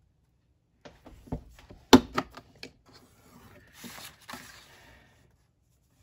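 A sheet of paper being handled and repositioned on a plastic envelope punch board. A run of sharp taps and clicks starts about a second in, loudest near two seconds. Then comes a sliding, rustling sound as the sheet is turned and pushed into place, fading out about a second before the end.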